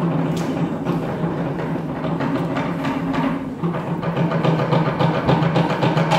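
Music led by drums beating a steady rhythm.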